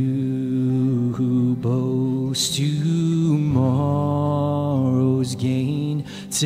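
Voices singing a slow hymn in a church worship service, long held notes stepping in pitch every second or so, with sharp 's' sounds of the words cutting through.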